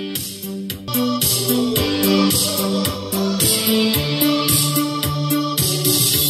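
Stereo test music with sustained notes over a steady beat, played through a pair of Tronsmart Mirtune H1 portable Bluetooth speakers linked as a stereo pair with their grilles removed. The music is panned to the left (blue) speaker, the right one silent.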